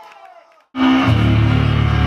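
Faint room sound fades to a brief dead silence at an edit, then, just under a second in, a loud low distorted note from an amplified electric guitar rings out and is held steady.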